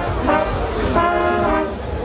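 Brass marching band of trumpets, baritone horns and sousaphones playing loud held chords: two in a row, each entered with a quick upward run of notes, with a brief dip just before the end.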